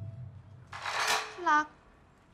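A breathy, whispered voice calling "darling", ending in a short voiced syllable that falls in pitch about a second and a half in. At the start, a low rumble fades out.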